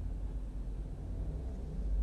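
Low, steady hum in a car's cabin, with no other distinct sound.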